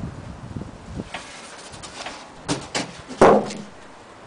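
A few irregular knocks and clicks, the loudest and longest about three seconds in.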